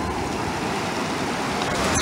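Small ocean waves washing up onto a sandy shore in a steady surf wash that swells slightly near the end.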